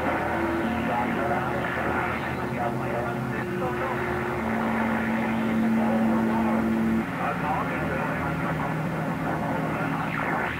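Receive audio from an HF transceiver on AM at 27.235 MHz (CB channel 24): band-limited radio static with faint, garbled voices from other stations and steady whistling tones from overlapping carriers. One low tone holds from about halfway to seven seconds in.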